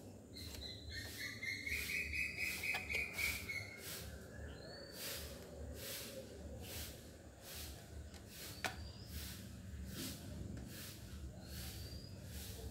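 Faint bird calls: short rising high chirps every few seconds and one longer wavering call about a second in, over a steady rhythmic hiss pulsing about twice a second.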